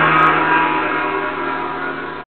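Gong ringing out from a single strike just before, its many overlapping tones slowly fading.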